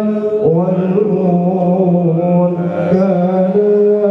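Islamic devotional chanting: a voice holding long, slowly wavering sung notes, with a short break about half a second in.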